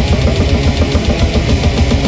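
Heavy metal band playing live at full volume: distorted guitars over very fast, unbroken drumming.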